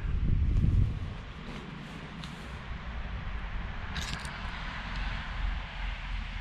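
Someone walking through dry brush and frosted leaves: rustling and a few sharp crackles of twigs about four seconds in, over a low rumble of wind on the microphone that is loudest in the first second.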